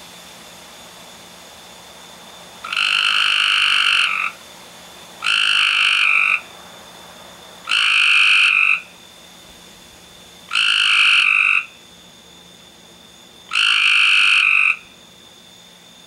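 A frog calling with its throat sac puffed out: five long croaks, each lasting a little over a second, coming about every two and a half to three seconds, the first about three seconds in.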